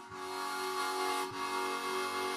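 Harmonica played with cupped hands, sounding held chords of several notes at once, with a brief break between notes just past halfway.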